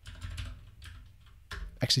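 Typing on a computer keyboard: a few separate keystrokes entering a line of code.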